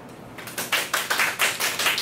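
A small group of people clapping, distinct handclaps at about six a second, starting about half a second in.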